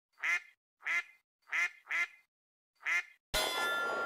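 A duck quacking five times in quick succession, with silence between the quacks. Then, a little over three seconds in, a sharp metallic clang that keeps ringing.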